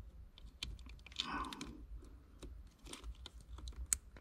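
Faint, scattered small clicks and ticks of needle-nose pliers and fingers handling a small plastic wire connector, with one sharper click just before the end.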